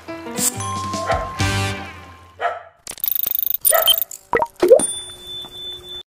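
Outro music ends about two seconds in. It is followed by short animation sound effects: a fast buzzing rattle, a few pops and swoops, and a ringing chime near the end.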